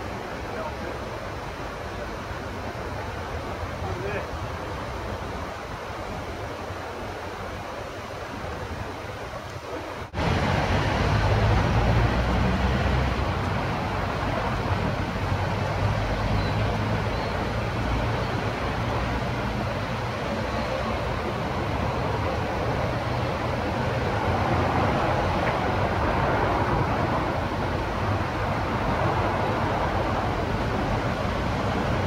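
Outdoor ambience of steady, even noise with no distinct source. About ten seconds in it cuts abruptly to a louder passage with a fluctuating low rumble, like wind on the microphone.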